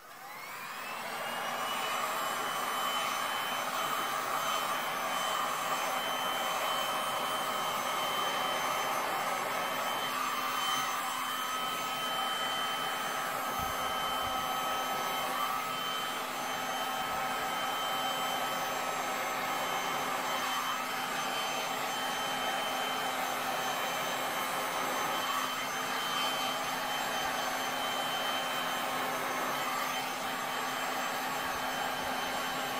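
Electric heat gun switched on, its fan rising in pitch over the first second or two, then blowing steadily with a steady whine.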